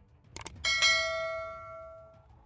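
A quick double mouse-click sound effect, then a bright bell chime that is struck twice in quick succession and rings out, fading over about a second and a half. This is the stock sound of a subscribe-and-notification-bell prompt.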